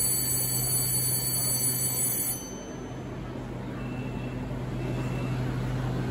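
Subway door-closing warning buzzer: a steady high-pitched electronic tone that stops about two seconds in, over the low steady hum of the train standing at the platform.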